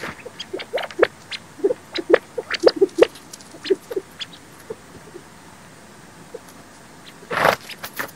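California quail feeding: a quick run of short, soft pecks and clucks, then a brief whir of wingbeats near the end as a quail flies in.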